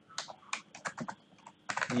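Computer keyboard keys clicking as a line of code is typed: a quick, irregular run of keystrokes.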